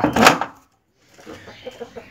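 A wooden door of a small coop room being pushed open: a sharp knock and scrape about a quarter second in. The sound then cuts out completely for about half a second.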